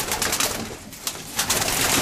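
Racing pigeons cooing in a loft, with rustling, scuffling noise over it that eases off briefly around the middle.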